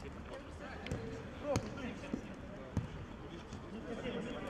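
Football being kicked on an artificial-turf pitch: several sharp thuds of the ball, the loudest about a second and a half in, with players' voices calling out.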